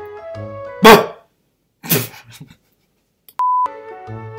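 A short music sting of stacked electronic notes is cut by two loud, sharp bursts about a second apart. Near the end a short steady beep starts the same jingle again.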